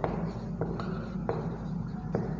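Marker pen writing on a whiteboard: a few short, separate strokes and taps as letters are drawn.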